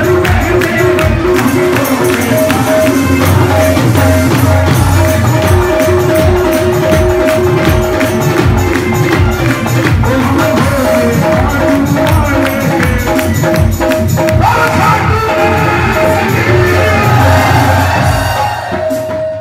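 Live Hindu devotional kirtan (bhajan) music over a loud sound system: fast, steady percussion under a repeating melody line, with a singer's voice growing stronger about three-quarters of the way in.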